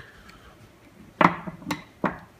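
Two sharp knocks about half a second apart, a little over a second in: a screwdriver being put down on a hard work surface.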